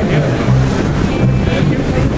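Wind buffeting the microphone in a steady, loud rumble, with voices in the background.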